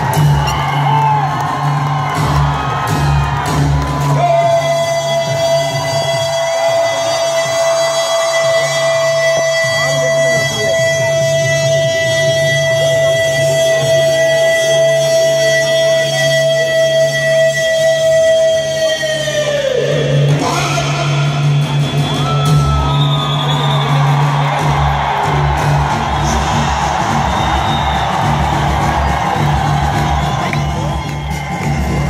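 A soldier's drawn-out parade command: one voice holds a single shouted note for about fifteen seconds before it breaks off and falls, over loud music and crowd noise. The crowd then cheers.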